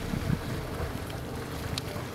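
Steady low rumbling noise, like wind buffeting a microphone, with a faint held tone above it.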